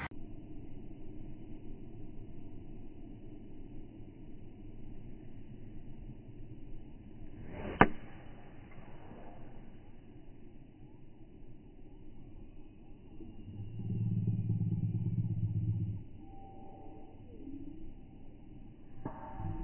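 Slowed-down, muffled recording of a golf tee shot: a low rumble throughout, broken about eight seconds in by one sharp crack of the club striking the ball. A louder low hum comes in for about two seconds near the end.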